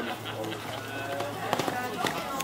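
People talking nearby, with a few thuds of a horse's hooves cantering on the sand arena.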